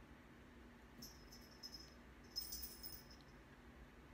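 Faint jingling of a pet's collar tags in two short bursts, about a second in and again a little past two seconds, over near silence.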